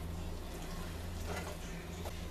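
Hands rubbing butter onto a raw turkey breast in a roasting pan, soft and faint, over a steady low hum.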